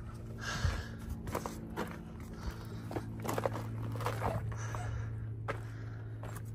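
Footsteps and small handling scuffs and clicks, crunching on the ground, over a steady low hum.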